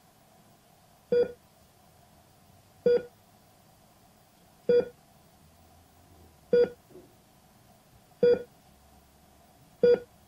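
Hospital heart monitor beeping steadily: a short, clear electronic tone about every 1.7 seconds, six beeps in all.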